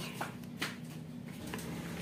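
A few faint clicks and light handling noises over a low steady hum.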